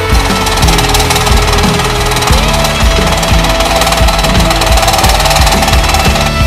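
A 90 W benchtop electric scroll saw running, its blade chattering in rapid strokes as it cuts a sheet of board, heard under rock background music.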